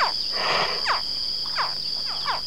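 Crocodile hatchling emerging from its egg, giving several short, high chirping calls that fall in pitch, spaced about half a second apart, over a steady high insect trill. A brief rustle about half a second in.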